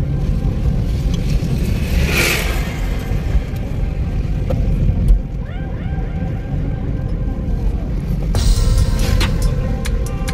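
Cabin noise of a Daihatsu Cuore 800cc driving on a hill road: a steady low rumble of engine and tyres, with a swell of noise about two seconds in. Music comes in about eight seconds in.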